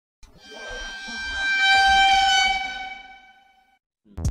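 A single sustained horn-like tone on one steady pitch, lasting about three and a half seconds. It swells to loud around two seconds in and then fades away, with a low rumble beneath it.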